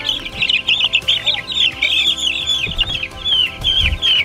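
A brooder full of young meat chicks peeping: many short, high chirps overlapping without a break. Near the end there is a low bump from handling.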